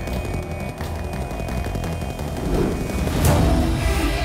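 Dramatic TV-serial background score with rapid low percussion, swelling to a loud hit about three seconds in.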